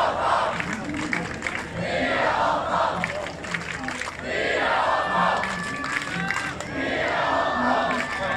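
A large outdoor crowd chanting in unison, the shout rising in surges about every two seconds over a steady crowd murmur.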